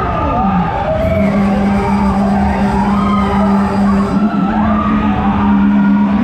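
Fairground ride running, its cars rumbling around the track under loud ride music. A steady low hum is held from about a second in almost to the end, with higher tones sliding up and down above it.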